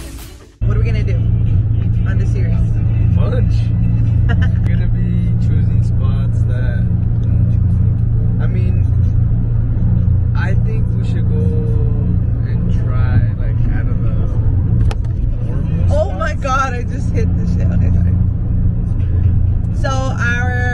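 Steady low rumble of a moving car's engine and road noise, heard inside the cabin.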